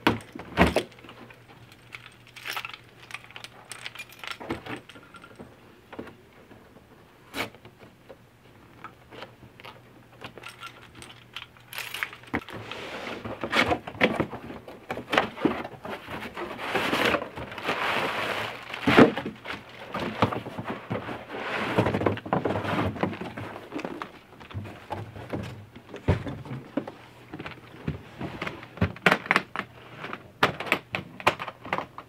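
Cardboard shipping box being unpacked: a few scattered clicks and knocks at first, then a long stretch of cardboard flaps and packing rustling and scraping as a hard guitar case is pulled out, with one sharp knock about two-thirds of the way through. More light clicks and knocks come near the end as the case is handled.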